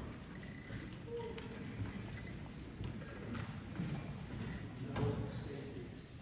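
A quiet pause in a hall. Faint scattered clicks and light knocks of movement on stage, such as footsteps on the wooden floor, sound over a low background murmur.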